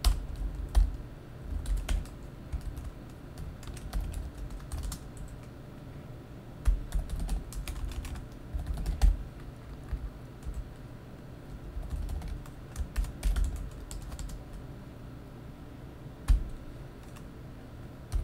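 Computer keyboard typing, in irregular runs of keystrokes with short pauses between.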